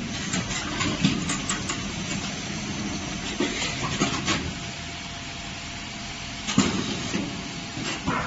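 Beetroot peeling machine running: a steady mechanical hiss with a few short knocks, the sharpest about six and a half seconds in.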